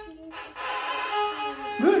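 Violin bowed by a beginner student: one sustained note on an open string, starting about half a second in, with plenty of bow noise around the tone.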